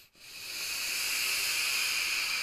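A long draw on a vape tank fired on a Sigelei 213 box mod: a steady hiss of air pulled through the tank's airflow over the firing coil. It fades in just after the start and holds level.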